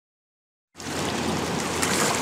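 River water splashing and rushing where a fishing line cuts the surface, a steady noisy wash that starts suddenly about three-quarters of a second in after silence.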